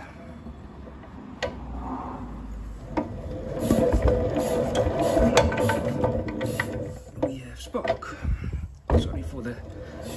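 A 1957 Lister D stationary engine being spun over by hand to check the magneto for spark, giving a run of mechanical clicking and rattling that builds about a third of the way in and eases off near the end. The magneto, its points just cleaned, is making a spark, and the engine has only a little compression.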